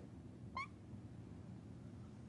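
Faint room tone with a single short squeak about half a second in, rising in pitch, from a marker drawing on a whiteboard.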